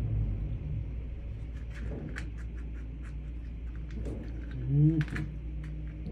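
A single short, low vocal sound that rises in pitch, about five seconds in, over a steady low hum and a few faint clicks.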